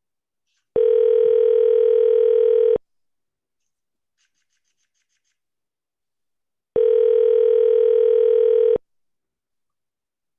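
Telephone ringback tone of an outgoing call: two steady rings about two seconds long, six seconds apart, in the North American two-seconds-on, four-off cadence. It is the callee's phone ringing unanswered before the call goes to voicemail.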